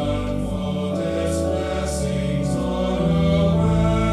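Mixed-voice school choir of boys and girls singing in harmony, holding sustained chords that change every second or so, with a few sibilant consonants of the words.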